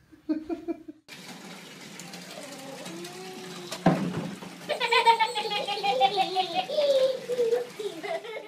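Water running steadily into a bathtub, with a sharp knock or splash about four seconds in. From about five seconds in, a pitched voice joins it, gliding slowly downward.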